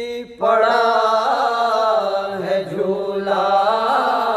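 Unaccompanied voices chanting an Urdu noha, a mourning lament, in long drawn-out melodic notes over a steady low held note. The chant breaks off briefly just after the start, then resumes.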